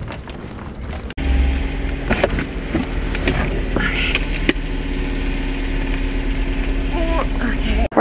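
A car engine idling with a steady low hum, starting about a second in, with a few short knocks and brief bits of voice over it.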